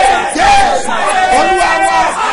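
A man praying aloud in a loud, shouting voice, with several voices sounding at once in fervent prayer.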